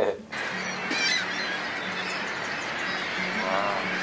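Steady roar of the Niagara River and falls, with birds calling over it a few times, under quiet background music.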